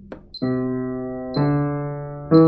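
Piano playing the start of a slow ascending C major scale, one note a second, with the right hand: the first note begins about half a second in and a slightly higher one follows about a second later, each held. A short high click sounds with each note, in time with a metronome beat at 60.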